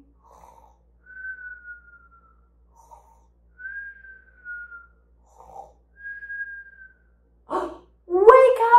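A woman mimicking sleep with a cartoon snore: a short noisy breath in, then a soft whistled breath out that sinks a little in pitch, three times over. Near the end comes a sharper, louder breath in.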